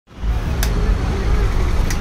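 Two sharp clicks, about half a second in and again near the end, from a plug being pushed into a wall socket and its switch being flipped, over a steady low rumble.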